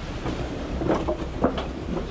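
Footsteps on wet wooden decking, a few irregular knocks from about a second in, over a steady low rumble of wind on the microphone.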